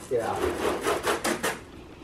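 Garden hose and spray nozzle being handled while rinsing a car: a quick run of short, irregular clatters and spatters for about a second, then quieter.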